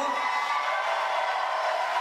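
Audience applauding: a steady wash of clapping from a large crowd that carries on as the speaker resumes.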